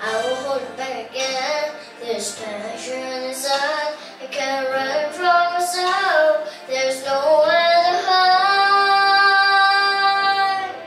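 A young girl singing a ballad into a handheld microphone, phrase by phrase, then holding one long note from about seven and a half seconds in.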